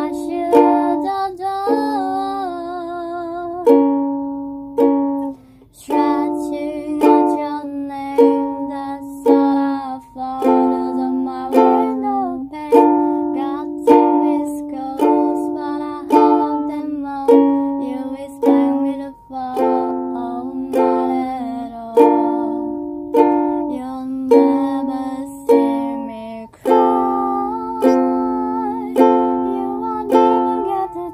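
Ukulele strummed in chords in a steady rhythm, the chords changing every second or so.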